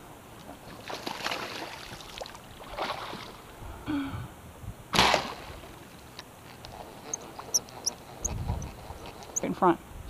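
A bowfishing bow shot about halfway through: one sharp snap, the loudest sound, with short noisy rushes before it. A few high bird chirps come near the end, and a voice right at the end.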